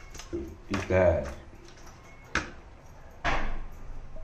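A man's voice briefly, with a single sharp click a little past halfway and a short burst of noise near the end.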